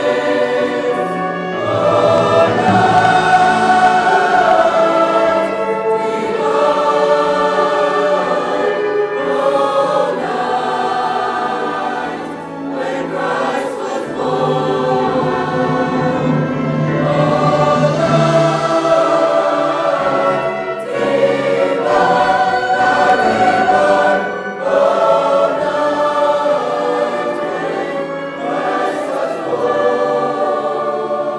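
A large choir singing in sustained phrases, accompanied by flute and clarinets.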